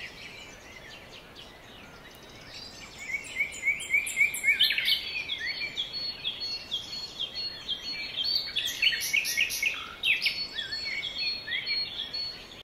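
Birds chirping: many short gliding chirps, soft at first and livelier from about three seconds in, several a second, over a faint background hiss.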